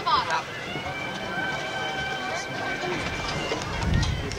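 Indistinct voices over steady outdoor background noise, with a steady high-pitched tone held from about a second in for about a second and a half.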